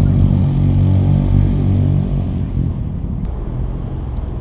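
A motor engine running close by, a low steady hum that eases off after about two and a half seconds.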